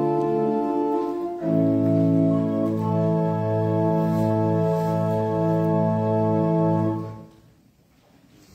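Organ playing slow, sustained chords over a held bass line, the chord changing about a second and a half in. The music stops on a final chord a little after seven seconds.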